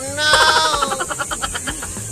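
A comic bleating sound effect: one wavering cry that falls in pitch over about a second.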